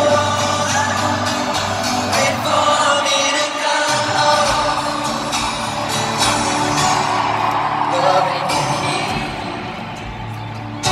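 Live concert music heard from among a stadium crowd: a male singer with acoustic guitar, the sound echoing through the open stadium.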